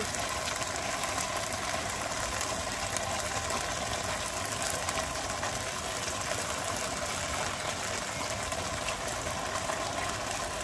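Steady rushing noise from the stove area, where a pot of curry is steaming hard. The level stays even throughout, with no breaks or knocks.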